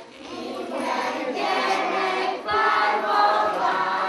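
A group of children singing a song together in unison, in sung phrases with a short break about halfway through.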